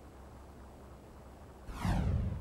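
A faint, steady low hum of dead air. Near the end comes a TV news transition sound effect: a whoosh that falls in pitch over a low rumble, accompanying the station-logo wipe.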